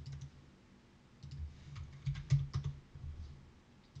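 Keys tapped on a computer keyboard: an irregular run of clicks with dull low thuds, starting about a second in and stopping shortly before the end.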